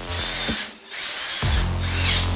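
A 12-volt cordless drill driving a screw into a wooden frame joint, its motor whining in two runs with a brief stop just before the middle.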